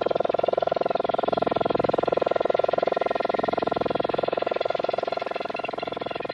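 Yamaha CS-5 synthesizer processing an external input through heavy filtering and LFO modulation: a sustained, steady-pitched tone chopped into a fast, even pulsing.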